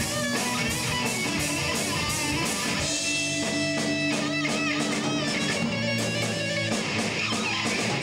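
Live rock band playing an instrumental passage with no singing: electric guitars, bass guitar and a drum kit, drums keeping a steady beat. A guitar holds long, wavering notes through the middle.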